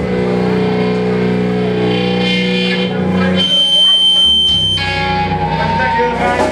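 Live metal band's distorted electric guitars and bass holding long ringing notes through the PA, with a high, steady whine of feedback for about a second midway.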